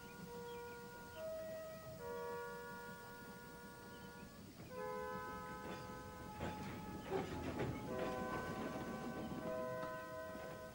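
Background music of steady held chords that change every second or two. From about six seconds in, a hissing, crackling noise joins the music and grows a little louder.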